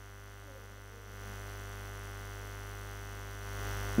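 Steady electrical mains hum with a buzzy edge, picked up by the microphone and sound system; it steps up slightly about a second in and again near the end.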